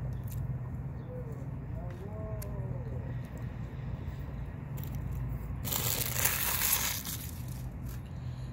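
A person chewing a taco close to the microphone, with soft crunches and a burst of rustling about six seconds in that lasts about a second. A low steady rumble runs underneath, and faint distant children's voices come through between one and three seconds in.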